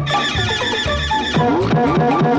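Cartoon soundtrack with sound effects over music. First comes a high, wavering, whinny-like cry. From a little past halfway it turns into a quick, even beat of clopping knocks with short rising tones.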